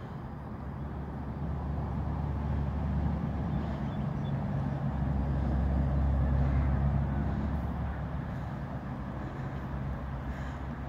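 Low engine rumble of a passing road vehicle, swelling to its loudest about six seconds in and then fading.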